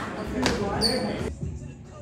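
A group of voices chattering and calling out in a gym, with a sharp thud about half a second in and a brief high squeak just after. The sound cuts off abruptly after about a second and drops to a much quieter background.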